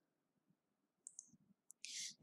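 Near silence, with a few faint short clicks about a second in and a brief soft hiss just before the end.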